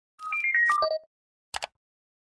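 Short electronic logo jingle: a quick run of five or six clean tones stepping downward in pitch over about a second, followed by two short clicks.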